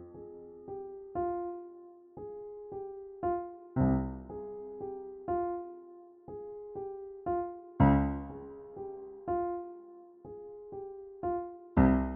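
Piano played slowly, left hand alone. A loud low octave is struck about every four seconds, on F, C and D-flat. Each octave is followed by a soft three-note figure, A-flat, G, F, that keeps returning.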